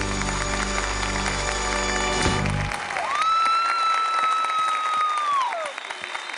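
The dance music ends on a long held final chord that stops about two and a half seconds in. Audience applause follows, with one long, high whistle held over the clapping for about two and a half seconds.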